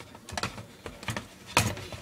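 Hard plastic clicks and knocks as a Ninja blender's motor head is fitted and pressed onto the pitcher lid, a few light clicks and then a louder knock near the end. The motor is not running.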